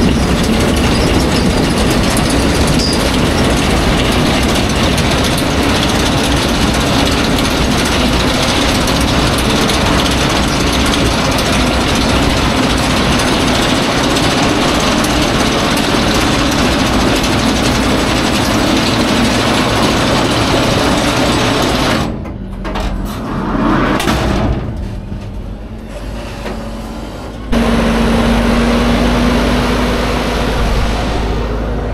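Potato harvester's discharge elevator running with a continuous mechanical rattle as it unloads potatoes into a tandem tipping trailer. About three-quarters of the way through the rattle drops away for a few seconds, then a steady engine hum takes over near the end.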